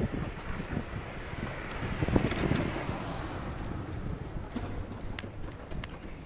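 A hand-pulled rickshaw rolling along an asphalt street, its wheels making a steady low rumble, with wind on the microphone and a louder swell about two seconds in.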